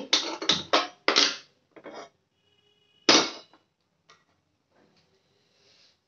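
A hand-held gas lighter clicked at a gas stove burner, four sharp snaps in quick succession over the first second and a half. About three seconds in comes one loud clatter as a metal kadai is set down on the burner.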